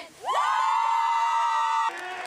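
A squad of high-school cheerleaders finishing a cheer with a long, high-pitched group shout. It rises at the start, is held for over a second and cuts off suddenly near the end.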